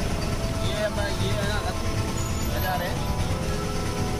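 Auto-rickshaw engine running as it drives slowly through a busy street, heard from inside the open cab as a steady low rumble, with music with steady held notes playing alongside.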